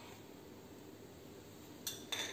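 Quiet kitchen room tone, then near the end a single light clink of a spoon against a bowl.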